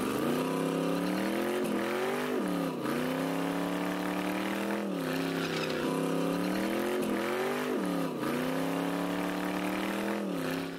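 Drag car's engine revving hard through a burnout on slick tires, its note creeping upward and then dipping sharply and recovering several times.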